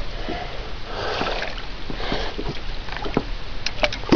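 Water splashing and sloshing at the side of a small boat as a hooked rainbow trout fights at the surface near the net, with a few small clicks of handling near the end.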